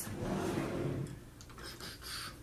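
Soft rustling and light clicks of makeup products being handled and moved about while someone rummages for an eyeshadow base, loudest in the first second.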